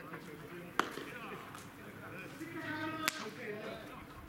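Two sharp leather smacks of a baseball landing in fielders' gloves during a throw-around, about a second in and again near the three-second mark, the second louder.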